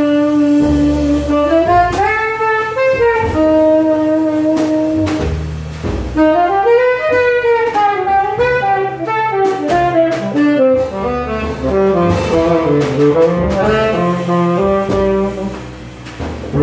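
A live jazz trio: the saxophone plays the melody, with long held notes first and then a quicker phrase that climbs and falls from about six seconds in. Upright bass and drums play under it.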